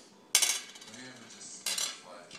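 Two sharp clinks on a glass tabletop, about a second and a half apart, the first louder, each with a short ring.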